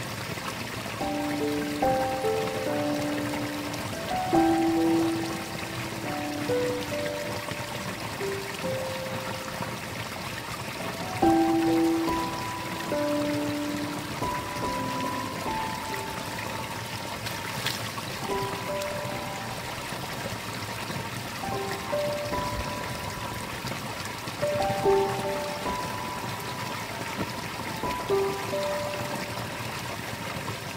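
Irrigation water pouring out of a small outlet into a rice-paddy ditch, a steady splashing flow. Over it plays a slow, gentle melody of single held notes.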